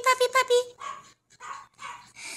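A woman calling a puppy in a high, sing-song voice, quick repeated syllables in the first second, followed by a few short breathy sounds.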